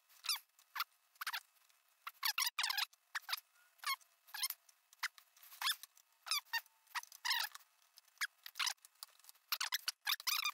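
A man's speech played back sped up several times, turned into rapid, high-pitched chipmunk-like chirps in quick syllable-like runs with no low voice underneath.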